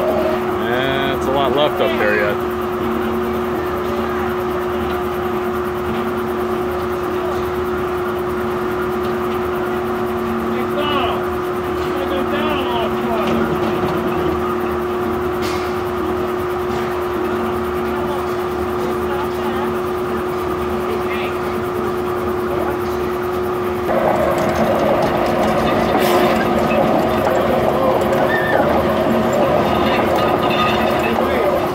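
Old belt-driven circular sawmill running, its big open blade giving a steady hum. About 24 seconds in, a higher tone joins and the sound grows louder.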